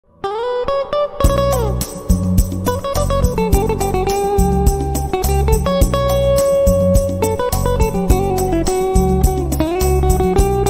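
Semi-hollow-body electric guitar playing a sustained lead melody with sliding and bending notes over a backing track with a steady bass pulse.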